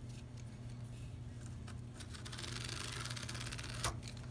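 A marker drawn along a steel ruler across corrugated cardboard, a soft scratchy stroke in the second half that ends with a short click, over a low steady hum.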